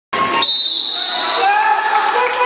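Referee's whistle blown once, a steady shrill tone lasting about a second, stopping play after a foul, with voices echoing in a gymnasium hall.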